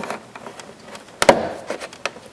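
A flat-blade screwdriver prying up the centre pin of a plastic push-type retainer clip. There are a few small clicks and scrapes, then one sharp click a little over a second in as the pin lets go.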